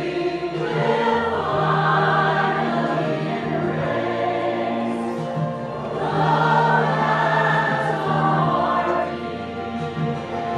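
Mixed church choir of men's and women's voices singing together in long held notes, over steady sustained accompaniment.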